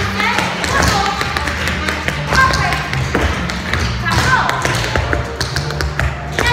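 Dance shoes tapping rapidly and rhythmically on a hard studio floor, over a recorded song with a singer and a band.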